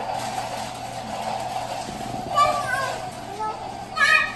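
A small child's brief high-pitched vocalising about halfway through, over a steady background hum.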